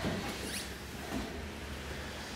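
A brief, faint high-pitched squeak rising in pitch about half a second in, over a steady low hum.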